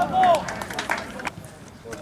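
Men shouting on an outdoor football pitch, with one loud call in the first half second, followed by a few short sharp knocks and quieter voices.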